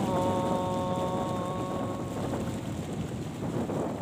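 A small boat running across open water, with a steady rush of engine and water noise and wind buffeting the microphone. A held pitched tone sounds over it and fades out about two seconds in.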